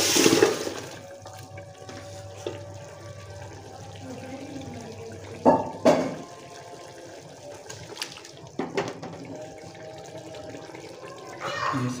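Beef and potato curry with its gravy poured from a pan into a large aluminium pot: a loud wet splash and slosh in the first second, then two pairs of sharp metal knocks of the pan or spoon against the pot around the middle and later on.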